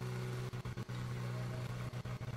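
A faint, steady low hum like a running engine, with a few faint clicks.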